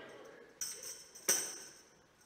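A tambourine shaken lightly twice: a soft jingle about half a second in and a louder one just past the middle, the jingles ringing briefly after each shake.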